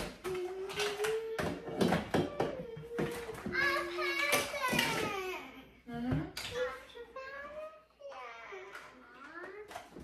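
Young children's high-pitched voices, talking and vocalizing in a sing-song way, mixed with repeated clatters and knocks of plastic toys being dropped into plastic storage bins in a small room.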